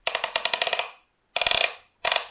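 Ratchet buckle of a Sidi-style lace system on a carbon cycling shoe clicking rapidly as the lace is pulled through it: a run of quick clicks just under a second long, then a shorter run after a brief pause.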